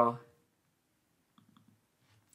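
The end of a spoken "uh", then a few faint short computer clicks about a second and a half in, as the password text in a configuration field is selected.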